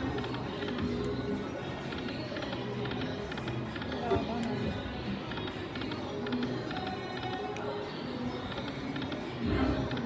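Buffalo Gold slot machine playing its reel-spin music and chimes as the reels spin, over the murmur of voices on a busy casino floor.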